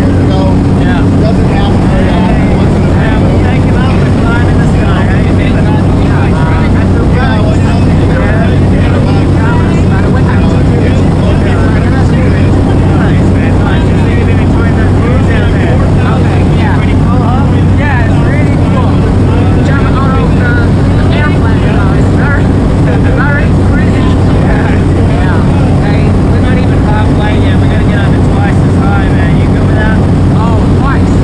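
Jump plane's engine and propeller droning steadily, heard from inside the cabin, with voices under the engine noise.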